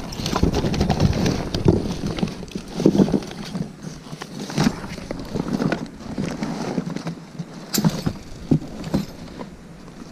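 Gloved hands rummaging through a cardboard box: irregular knocks, clicks and rustling as objects are picked up and moved, growing quieter over the last few seconds.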